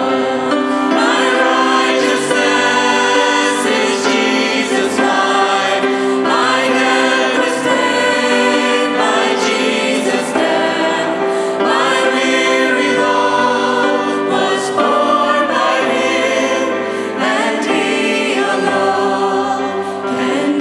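A group of voices singing a worship hymn in unison, accompanied by grand piano, in phrases that run on without a break.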